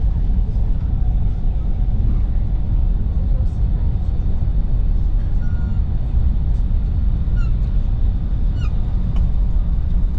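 Steady low rumble inside the cabin of a high-speed train running at speed, with a few faint short chirps in the second half.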